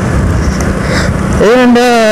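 Wind and road noise of a moving motorcycle, then a voice comes in about one and a half seconds in with a long drawn-out sung note.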